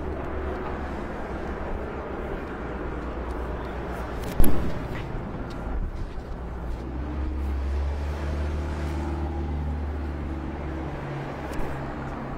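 Steady low hum of vehicle engines idling along a street, growing stronger about halfway through. A sharp knock cuts through about four seconds in, with a smaller one near the end.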